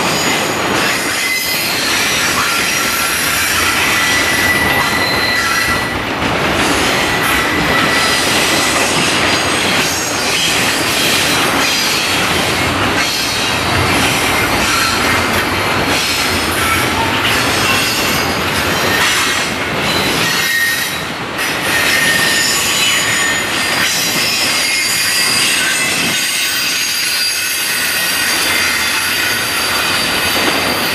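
CSX double-stack intermodal container train running past close by. Its steel wheels squeal in thin high tones that come and go over the steady running noise of the cars.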